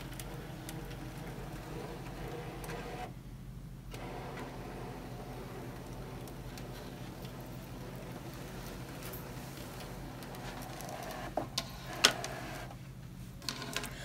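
Brother ScanNCut cutting machine scanning the mat: its feed motor runs steadily, drawing the mat through, with two short breaks, about three seconds in and near the end. A couple of sharp clicks come shortly before the end.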